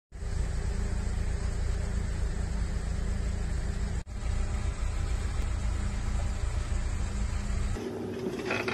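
A motor vehicle's engine idling, a steady low rumble with a faint hum. It cuts out for a moment about four seconds in, then carries on.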